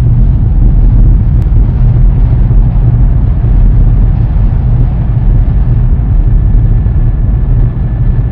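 Loud, steady, deep rumble of a rocket launch, heaviest in the low bass.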